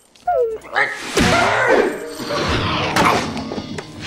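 Film soundtrack: music mixed with voices and several dull thuds.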